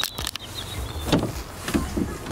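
The front door of a Mercedes E-Class saloon being opened by its outside handle: a few sharp clicks near the start, then a louder clunk a little after a second in as the door swings open.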